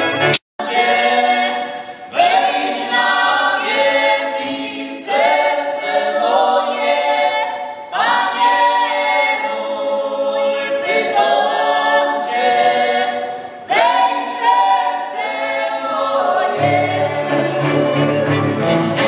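Góral highlander folk band singing a song in several voices without accompaniment, each phrase opening with an upward scoop. A brief click and dropout comes just after the start, and near the end the fiddles and basy (folk cello) come back in.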